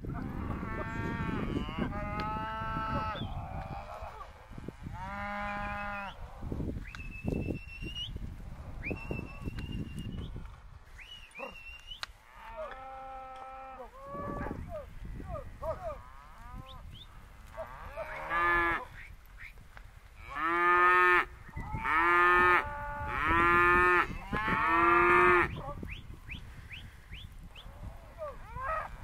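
A herd of Hereford and Angus cross steers and heifers mooing, one call after another with some overlapping. The loudest is a run of four long calls in quick succession about two-thirds of the way through.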